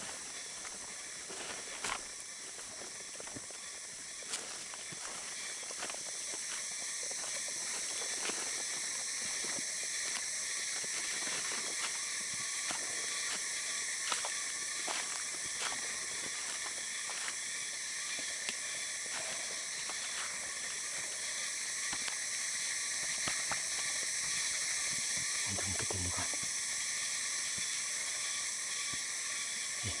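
Steady, high-pitched buzzing chorus of tropical forest insects, holding level throughout, with scattered crunches and snaps of footsteps on dry leaf litter.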